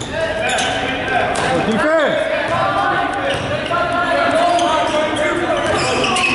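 Sounds of a basketball game in a gym: the ball bouncing on the hardwood court and sneakers squeaking, with players' and spectators' voices calling out over the echoing hall. A sharp squeak rises and falls about two seconds in.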